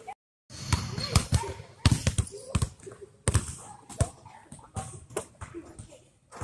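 Basketballs bouncing on a hardwood gym floor, a run of irregularly spaced thuds that start about half a second in.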